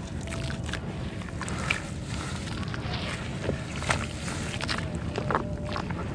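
Crunchy chunks of dry dirt crumbled by hand into a tub of water: scattered crackles and sharp little crunches as pieces break and drop, over a steady low rumble.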